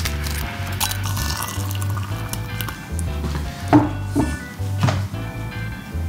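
Background music with a steady bass line, over which a ceramic tea mug is handled while tea is being made, giving a few sharp china clinks in the second half.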